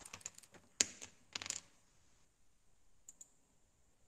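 Faint computer keyboard typing and clicks: a quick run of keystrokes in the first second and a half, then two light clicks about three seconds in.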